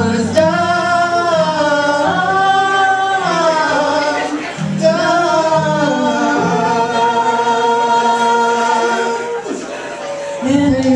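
Live singing with acoustic guitar accompaniment: a solo voice holds long, drawn-out notes in three phrases over the guitar, the last note held for several seconds before fading near the end.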